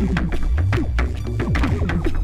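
Modular synthesizer music: a pumping, throbbing bass from a Serge VCFQ filter, with quick falling synth notes a few times a second and clicking sampled African percussion from a Radio Music module, all run through a Serge frequency shifter.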